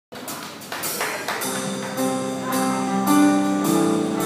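Live band playing an instrumental intro: a few sharp hits in the first second and a half, then held chords that swell in loudness.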